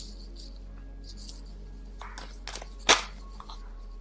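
Tarot cards being handled and shuffled off-camera: a few brief crisp rustles and snaps, the loudest just before three seconds in. Under them run faint background music and a low steady hum.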